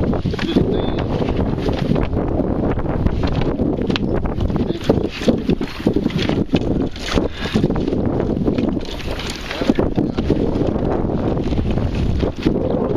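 Wind rumbling on the microphone, with irregular knocks and rustling as a person climbs into a kayak and settles into the seat in shallow water.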